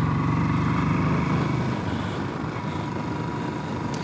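Royal Enfield Classic 500's single-cylinder engine running while the bike rides along, with wind noise on the microphone. The engine note drops away about halfway through.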